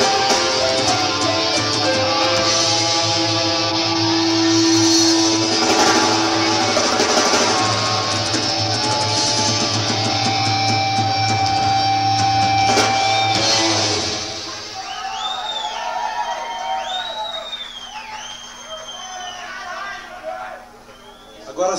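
Live heavy rock band playing with electric guitar, bass guitar and drums, with long held notes over a steady low bass. The song ends about 14 seconds in, and the crowd answers with whistles and shouts.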